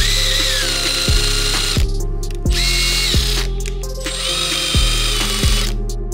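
Makita 18V cordless drill spinning a blind rivet adapter, its motor whining in three runs: about two seconds, then a short one, then over two seconds. Background music with a steady beat plays underneath.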